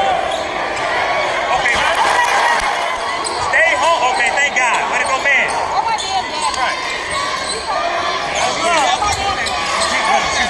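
Basketball being dribbled on a hardwood gym floor during a game, over the chatter and shouts of spectators in a large gym. A run of short, high sneaker squeaks comes about four to five seconds in.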